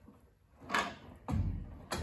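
Casters on a homemade 2x4 wooden cart rolling briefly over a concrete floor: a short scuff, then a low rumble about a second and a half in that ends in a click.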